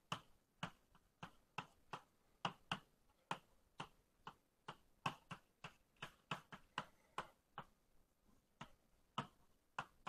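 Faint, irregular taps of writing on a lecture board, about two or three sharp clicks a second with a short pause near the end, as an equation is written out.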